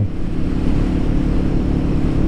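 Royal Enfield Guerrilla 450's single-cylinder engine running at a steady cruising speed, with a steady rush of wind and road noise over it.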